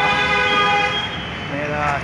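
A vehicle horn sounds one steady blast lasting about a second.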